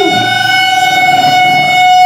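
Live amplified band holding a single steady high note with overtones, unbroken and without drum hits, loud.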